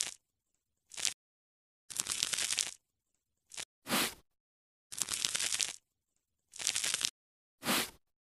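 Crackly scraping, tearing ASMR sound effect of a knife cutting through clustered pod-like growths, heard as about eight separate strokes of under a second each with dead silence between them.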